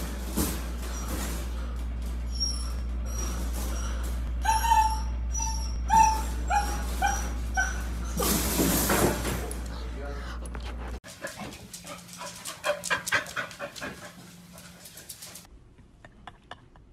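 A husky puppy whimpering and yipping in a run of about eight short cries, each falling in pitch, over a steady low hum. After a cut about eleven seconds in, quicker clicks and short cries follow.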